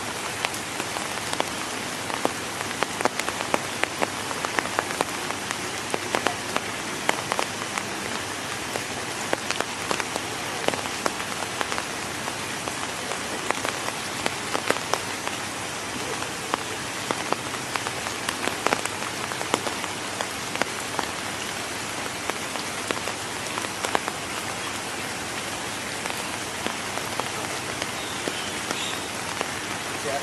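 Steady rain falling on wet ground and puddles, with many individual drops pattering close by at irregular intervals.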